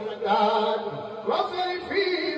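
Male voices chanting a Sufi zikr, sung lines with long held notes and a rising glide about a second and a half in.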